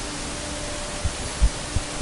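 Conquest 515 CNC router running as its head repositions between cuts: a steady hiss with a faint hum, and a few soft low knocks about a second in and near the end.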